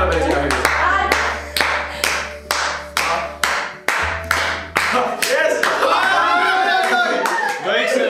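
Hands clapping in a steady beat, about three claps a second, then stopping as voices take over near the end.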